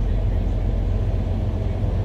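Semi truck's diesel engine idling, a steady low rumble heard inside the cab.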